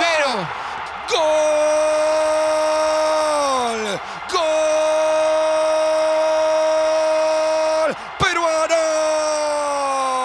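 A football commentator's long drawn-out goal cry, the voice held on one steady note for seconds at a time. It slides down and breaks off about three and a half seconds in, starts again on the same note and holds until about eight seconds, then gives way to short shouts.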